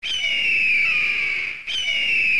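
A kite calling: two long whistled cries, each falling in pitch, the second starting near the end.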